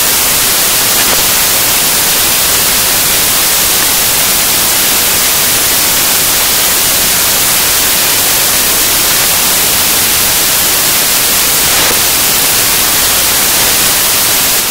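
Loud, steady hiss of white noise like TV static, with no music or voice in it: the stream's sound has switched to static behind a stand-by screen.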